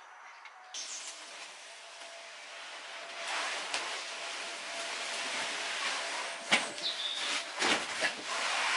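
Steady hiss of outdoor background noise, louder from about three seconds in, with a few sharp knocks in the second half.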